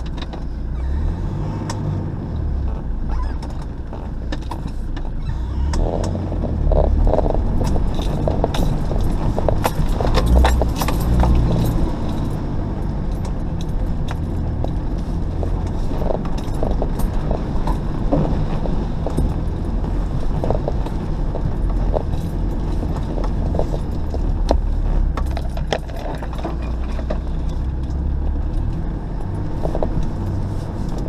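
4x4 engine running low and steady as the vehicle crawls along a muddy, rutted track, with frequent knocks and rattles as it lurches over the ruts. It gets louder for several seconds in the first half, then settles back.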